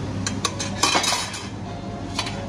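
A metal serving spoon clinking against a stainless-steel chafing dish and its spoon holder. There are a few sharp clinks, with the loudest cluster about a second in.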